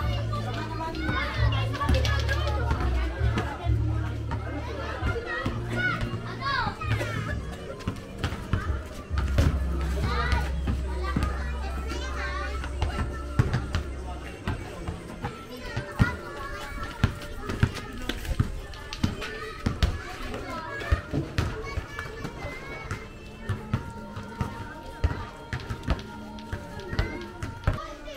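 Children shouting and talking while basketballs bounce on a concrete court, with sharp, frequent thuds in the second half. Music with heavy bass notes plays loudly for the first half, then stops about halfway through.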